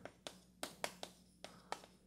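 Chalk tapping on a chalkboard while writing: a series of about eight short, faint clicks.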